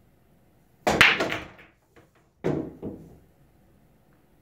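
A 9-ball break shot on a pool table: the cue strikes the cue ball, which hits the rack about a second in with a loud clatter of balls knocking together. A second, quieter run of clicks follows about a second and a half later as the spreading balls collide again.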